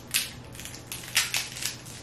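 Boiled Dungeness crab shell cracking and snapping as it is broken apart by hand: a series of short, sharp cracks, several of them close together a little past the middle.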